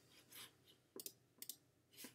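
A few faint computer mouse clicks, close together about a second in, over near silence.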